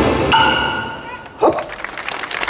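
Yosakoi dance music ending: a final ringing note fades out. About a second and a half in comes one short, loud shout.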